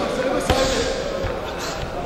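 Boxing punches landing, with one sharp thud about half a second in and a few softer knocks after it, over men's voices shouting.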